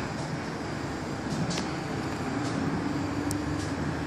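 Road traffic from the streets far below, a steady rumble. A low, steady engine hum comes in a little over two seconds in, with a few faint high ticks.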